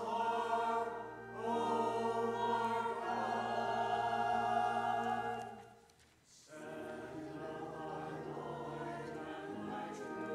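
Mixed church choir singing in parts, with long held notes. About six seconds in the singing breaks off briefly, then resumes more quietly.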